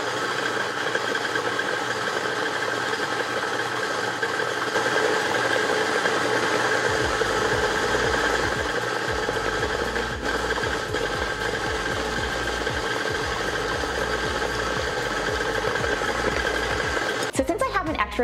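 KitchenAid tilt-head stand mixer running steadily with its paddle, beating pieces of almond paste into creamed butter.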